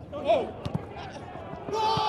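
Players shouting on a football pitch: a short shout falling in pitch, then two thuds of the ball being kicked, and near the end a long, loud yell begins.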